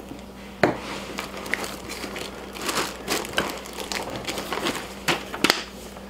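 Plastic packaging crinkling and rustling as parts are handled and lifted out of a tool bag, with a few sharp clicks. The loudest click comes about half a second in, and another comes near the end.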